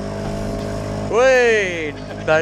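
Small outboard motor pushing an inflatable dinghy, running with a steady hum. About a second in, a person gives a loud, high call that falls in pitch.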